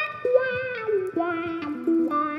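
Electric guitar playing a slow single-note line through a wah pedal, the notes stepping downward with a little vibrato on one held note.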